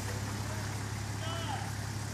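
Nissan Patrol GR Y60 4x4's engine running steadily at low revs while the truck sits bogged in mud.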